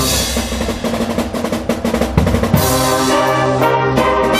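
Marching band playing: the drums play a fast roll for about two and a half seconds, then the brass comes back in with a held chord.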